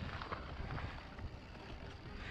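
Wind buffeting the microphone of a camera riding along on a mountain bike, a steady low rumble, over the crunch of tyres on dry dirt trail and scattered small clicks and rattles from the bike.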